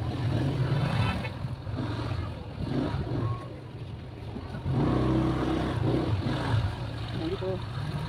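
A motor vehicle engine running steadily with a low hum, louder for a stretch past the middle, with indistinct voices over it.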